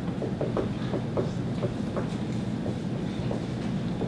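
Dry-erase marker writing on a whiteboard: a run of short taps and squeaks over a steady low room hum.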